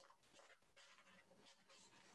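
Near silence: faint, irregular room noise from an open microphone.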